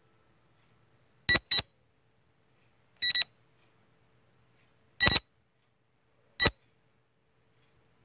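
Quiz countdown-timer sound effect: short, high electronic beeps, mostly in quick pairs, repeating about every one and a half to two seconds with silence between.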